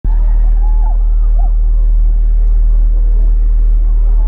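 Loud, steady deep bass drone through a concert hall's PA system, with crowd voices over it.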